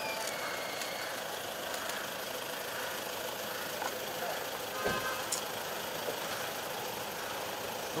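Steady street background with a car engine idling. A single thump about five seconds in.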